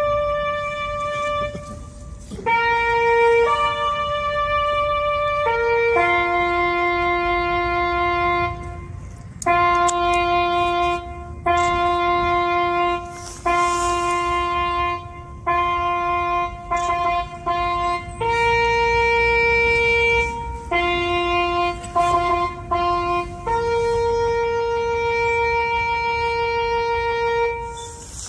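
A solo brass instrument plays a slow bugle call in long, held notes with short breaks between them. This is the kind of call sounded during a wreath laying.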